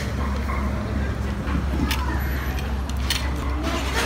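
Busy eatery background: a steady low rumble of road traffic under faint voices, with a couple of sharp clicks partway through.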